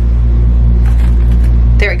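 A steady, loud low hum runs throughout, with a few faint light ticks around the middle and a woman's voice starting near the end.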